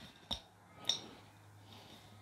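Two small clicks about half a second apart as a control knob is worked off its shaft on a Blue Yeti microphone, followed by a faint low hum.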